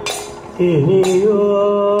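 Kathakali vocal music: a male singer enters about half a second in with an ornamented line that settles into a held note, over sharp metallic strikes keeping time, one at the start and another about a second later.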